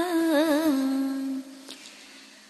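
A voice chanting Vietnamese Buddhist verse in a sung style. It holds the last syllable of a line on one long note with a wavering ornament, and the note fades out about a second and a half in, leaving a brief lull.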